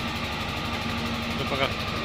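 A steady low mechanical hum with a constant drone, like an idling engine, under the murmur of a crowd; a man says a short word near the end.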